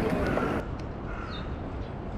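Background voices cut off abruptly about half a second in, leaving a steady low outdoor city rumble. A single short bird call sounds about a second in.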